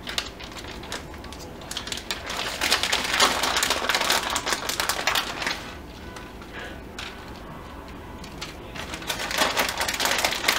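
Plastic shredded-cheese bag crinkling and rustling as the cheese is shaken out over a pizza, a dense crackle that eases off in the middle and picks up again near the end.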